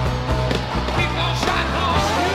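Rock band recording playing an instrumental passage: drums hitting in a steady beat over a bass line, with electric guitar notes bending in pitch.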